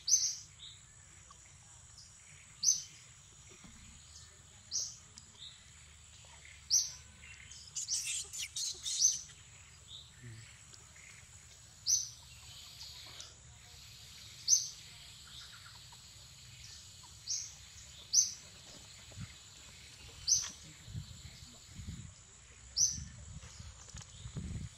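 A bird calling: short high notes, each falling slightly, repeated about every two to three seconds, with a quick burst of chirps about eight seconds in. A steady high whine runs underneath.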